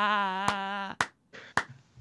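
A man's long laugh held on one steady pitch for about a second, cutting off suddenly. Three sharp claps follow about half a second apart.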